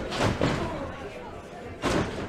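Bodies slamming into a wrestling ring: a thud at the start and a louder, sharp slam near the end.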